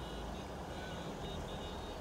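Quiet, steady low rumble of a car engine idling.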